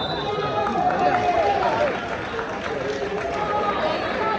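Indistinct voices of spectators and players in a school gym, with basketball shoes squeaking on the hardwood court several times.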